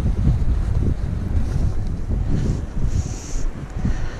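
Wind buffeting the microphone of a GoPro action camera, a loud, gusting low rumble.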